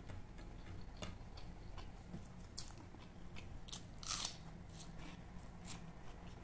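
Close-miked eating of grilled chicken and rice: chewing and biting with scattered short crisp crunches and mouth clicks, a longer, louder crunch about four seconds in.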